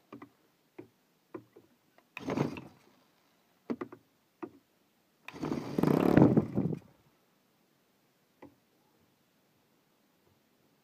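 Handheld electric starter spinning a cold Saito FA-72 four-stroke model aircraft engine, converted to spark ignition, in two short bursts: one of under a second, then a longer, louder one of nearly two seconds. The engine does not catch. Light clicks and knocks of handling come between the bursts.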